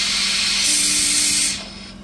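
Air-driven venturi vacuum extractor on a compressor airline, hissing steadily as it sucks fuel and debris out of a Weber IDF carburetor's idle-jet circuits. It is shut off about a second and a half in.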